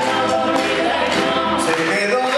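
Cuban son band playing live, with several voices singing together over percussion, bass and guitar, heard from far back in a concert hall.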